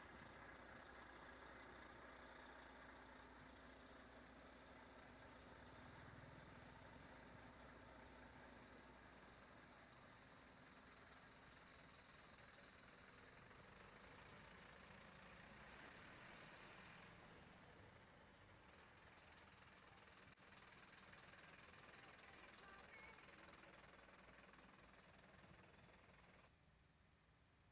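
Near silence: a faint, steady hiss with no distinct sound in it.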